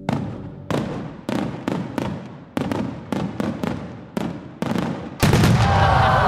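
Fireworks sound effect: about a dozen sharp bangs at irregular spacing, each with a short ringing tail. About five seconds in, a louder continuous noise with whistling glides takes over.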